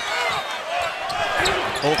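Basketball being dribbled on a hardwood court, with sharp bounces over steady arena crowd noise.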